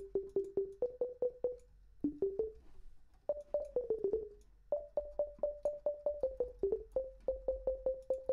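A sine-wave pluck patch in Native Instruments Massive playing quick runs of short notes, about four or five a second, stepping between a few pitches with brief pauses between phrases. Each note starts sharply and dies away fast, and a chorus has just been put on the patch to widen it into stereo.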